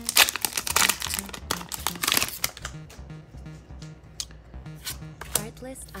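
Foil Pokémon booster pack wrapper being torn open and crinkled by hand, loudest in the first two and a half seconds, then softer, scattered crackles.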